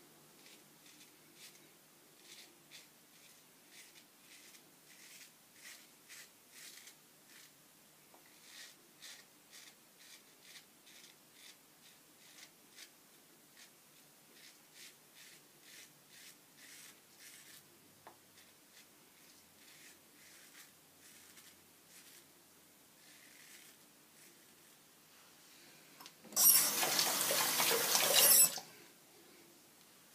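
Dovo Shavette razor with a Fromm blade scraping through lathered stubble in short, faint strokes, about one or two a second. Near the end a tap runs for about two seconds, much louder than the shaving.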